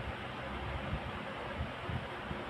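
A steady low hiss of background noise in a pause between speech, with a few faint low bumps.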